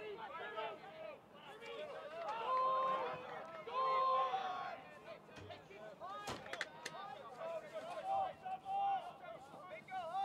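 Distant shouting from players and the sidelines on the lacrosse field, with two long, held calls about three and four seconds in. A few sharp clacks come about six seconds in.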